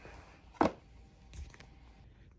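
One sharp click about half a second in, from the plastic landing-gear door of a foam RC model jet being handled by hand, followed by a faint rustle and quiet room tone.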